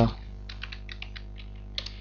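Computer keyboard typing: a run of quick keystrokes, then a couple more near the end, over a steady low electrical hum from a buzzy microphone.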